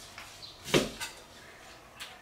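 Chinese cleaver cutting through an onion and striking a wooden cutting board: one sharp knock about three-quarters of a second in, then a lighter knock just after.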